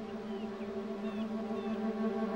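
Soft background film score of held, sustained chords, growing slightly louder.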